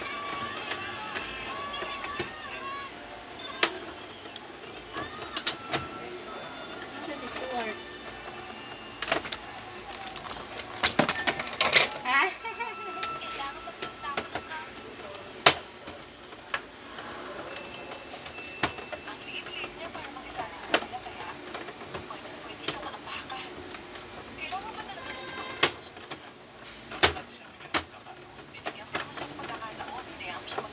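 Plastic housing of a Canon Pixma MP287 printer being pried open and handled, with scattered sharp clicks and knocks every few seconds and a cluster of them about twelve seconds in.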